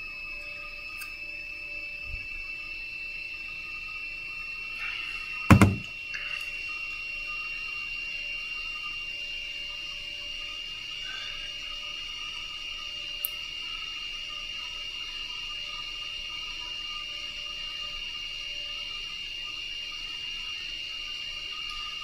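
Steady background hum with a thin high whine, broken once by a short, sharp knock about five and a half seconds in.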